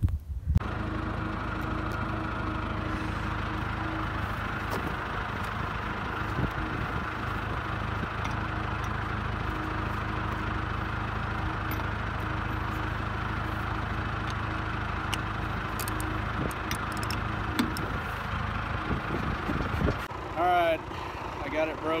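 A vehicle engine idling steadily, with an even, unchanging note.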